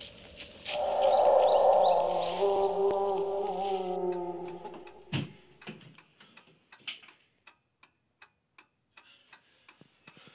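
A loud, sustained pitched drone for the first half, cut off by a thump about five seconds in. Then a clock ticks in a quiet room, about three ticks a second.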